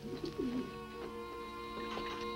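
Film soundtrack: a caged dove cooing once near the start, over held music notes that carry on throughout.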